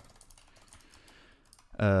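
Computer keyboard typing: a run of faint, quick key clicks as text is entered.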